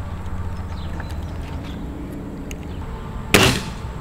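A single shot from a scoped pellet air rifle, a sharp crack a little over three seconds in, over a low steady hum.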